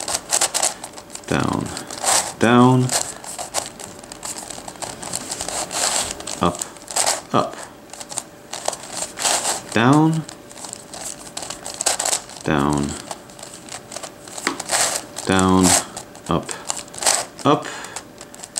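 Plastic twisty puzzle (Crazy Radiolarian) being turned by hand: a running series of sharp clicks and rattles as its layers rotate and snap into place. About four drawn-out groans, each falling in pitch, stand out as the loudest sounds.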